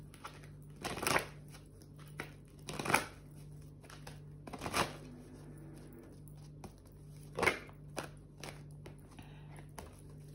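A deck of oracle cards being shuffled and handled, heard as about five short rustles a second or two apart over a faint steady hum.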